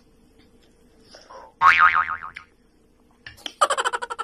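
A cartoon 'boing' sound effect, under a second long, with a pitch that wobbles quickly up and down, about halfway through.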